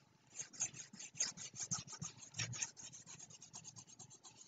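Faint, rapid scratching of a stylus rubbed back and forth over a pen tablet as on-screen handwriting is erased. The strokes thin out in the last second.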